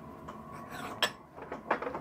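Small steel parts of a keyway-broaching setup being handled at an arbor press: light metallic clinks, with one sharp click about a second in and a few small clicks near the end.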